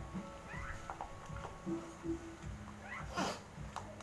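Background music with a repeating pattern, over which an animal gives short, high rising cries. The loudest cry comes about three seconds in.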